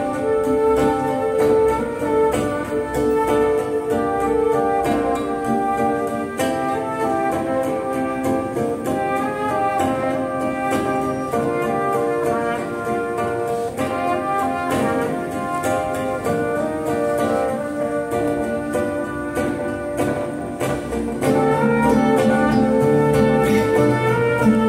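Live acoustic band playing an instrumental passage: guitars under a melody of held notes.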